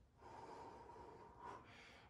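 A man's slow, faint breath, one long drawn breath in a controlled recovery-breathing exercise after exertion.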